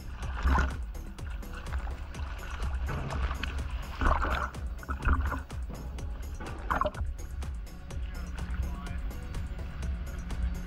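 Background music with a steady beat, with a few short splashes of choppy sea water against the camera at the waterline.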